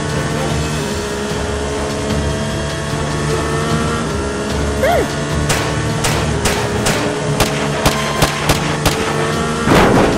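Cartoon pistol-shot sound effects: about a dozen quick, irregularly spaced shots starting about halfway through, over steady background music. A louder noisy burst comes just before the end.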